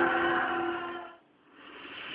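Held musical chord, several steady notes sustained and fading out just past a second in, followed by a brief drop to near silence and then faint hiss.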